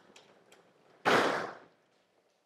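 Sliding chalkboard panels being moved up and down: one sudden burst of sliding noise about a second in, fading out within about half a second.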